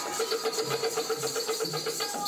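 Bollywood mujra-style dance music with a fast, even, jingling high percussion over held tones and a low beat about once a second.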